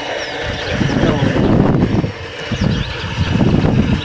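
Farmed catfish splashing at the surface of a concrete pond as feed is thrown in, a churning water noise that comes in two surges.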